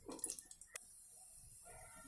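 Liquid poured from a small steel bowl into an aluminium pressure cooker over cashews, with a short metallic clink about a second in. A faint, drawn-out whine follows near the end.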